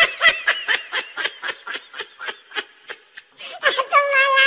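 A person laughing in a long run of quick, high-pitched bursts, about five a second, loudest at the start and tailing off, with a fresh laugh starting near the end.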